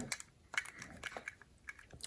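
A few faint, short clicks and rubs of fingers handling a die-cast toy car with a snap-on plastic shell, most of them between about half a second and a second and a half in.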